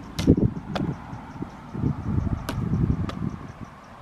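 A baseball smacking into a rebounder net and leather gloves during a game of catch. There are four short, sharp cracks, the loudest just after the start and another about halfway through, over a low rumble of wind on the microphone.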